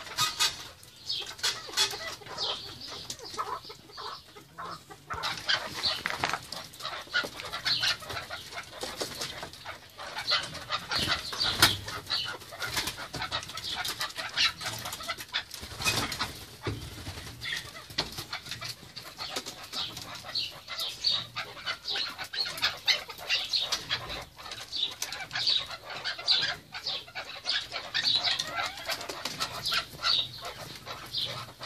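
Chukar partridges calling in a continuous chatter of short, rapidly repeated notes, with a few wing flaps as a bird flutters up.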